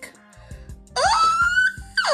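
A woman's drawn-out, wordless excited squeal that starts about a second in, rising in pitch and holding high before it begins to swoop down at the end, over background music with a steady beat.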